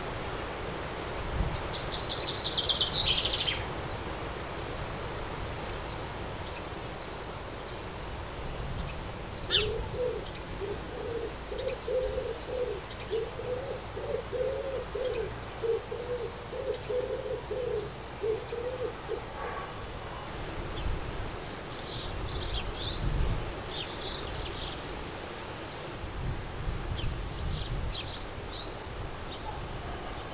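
Garden birdsong: a short, rapid high trill a couple of seconds in, then a pigeon cooing in a low, evenly repeated series for about ten seconds, and quick high chirps from small birds in two bunches near the end.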